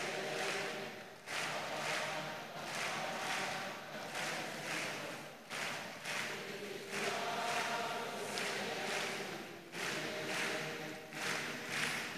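A church congregation singing a gospel chorus together, faint and away from the microphone, with no lead voice over it.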